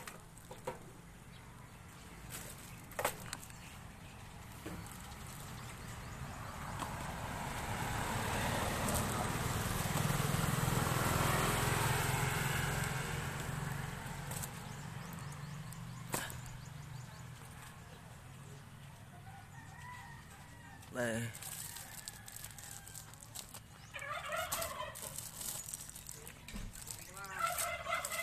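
Outdoor background noise that swells and fades over about eight seconds in the middle, with a few isolated clicks, then several short wavering calls near the end. Plastic-bagged bread rolls are handled in a plastic crate.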